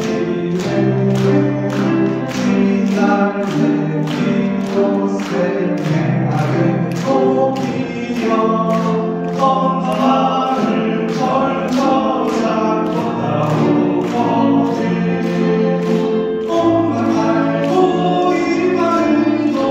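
Live vocal song with accompaniment in a church: voices singing held melodic lines over low bass notes and a steady beat of about two strokes a second.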